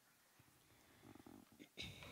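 Near silence: faint room tone, with a soft low rough sound a second in and a brief rustle near the end.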